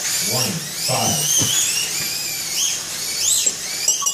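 Several slot cars' small electric motors whining at high pitch, each whine rising and then falling away again and again as the cars speed up and slow down around the track, the whines overlapping.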